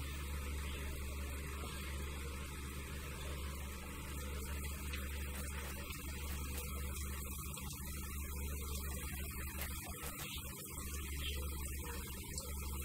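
Onion pakoda deep-frying in hot oil, a steady sizzle with faint crackles, over a low steady hum.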